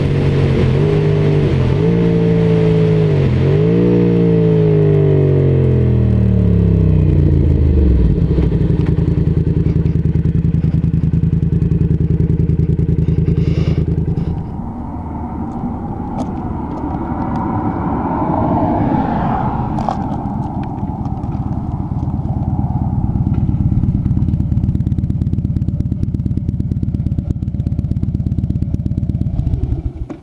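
Motorcycle engine under way with a few quick dips in pitch, then winding down as the bike slows, and running steadily at low revs from about eight seconds in. In the second half a second motorcycle's engine joins it as another bike pulls up alongside.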